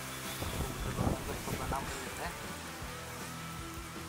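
Faint voices and quiet music over a low steady hum.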